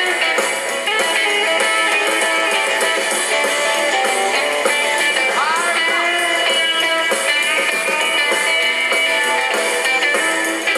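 Early rock and roll recording in an instrumental passage led by guitar, with no singing. One note bends in pitch about five and a half seconds in.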